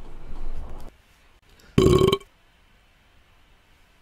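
A person's single short throaty vocal sound, about half a second long with a steady pitch, about halfway through.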